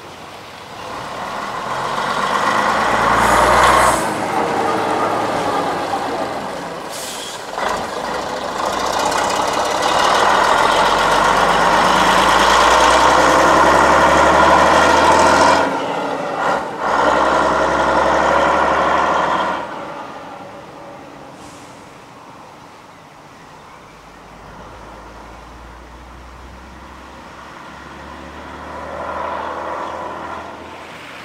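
Leyland National single-deck bus driving past and pulling away, its diesel engine loud for the first twenty seconds or so, with a few brief breaks in the engine note. It then fades to a low drone, and another vehicle's engine grows louder near the end.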